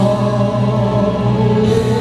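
A male singer singing live into a handheld microphone over backing music, holding long notes.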